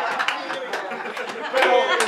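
Crowd chatter: several men talking and reacting at once, with a few short sharp clicks among the voices.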